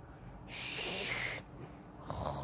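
One long, breathy, snore-like breath from a person, starting about half a second in and lasting about a second, part of a slow, regular snoring rhythm.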